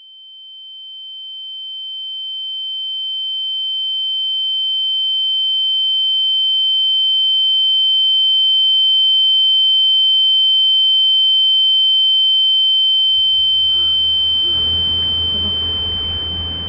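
A high, steady ringing tone swells up out of silence and holds: the film effect of ringing ears after an electrical blast. About thirteen seconds in, a muffled low rumble of surrounding noise fades in beneath it.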